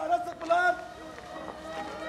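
A voice giving short wordless cries, then holding one steady pitched note near the end.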